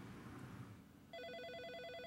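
Office desk telephone ringing: one electronic trilling ring, about a second long, starting about halfway in.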